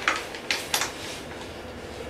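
Three sharp metal clicks in the first second, as a wrench is fitted to and worked on the nuts holding the front axle at the bottom of a dirt bike's fork.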